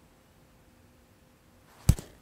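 Quiet room tone, then a single sharp thump near the end as a hand strikes the chest.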